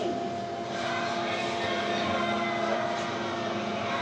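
A steady mechanical hum with several held tones over a noisy wash, like a fan or refrigeration machinery running, even in level throughout.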